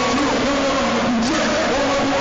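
Loud live hip-hop performance through a concert PA, a dense wash of sound with held, wavering tones on top.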